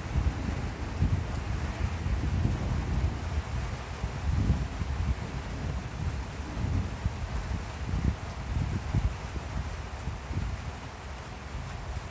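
Storm wind gusting over the microphone: a low rumble that rises and falls in uneven gusts, with a fainter hiss above it.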